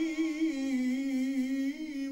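A male munshid sings an Islamic ibtihal (religious supplication) solo, without instruments. He holds one long, drawn-out note, ornamented with a wavering melisma, and the pitch dips slightly and rises again.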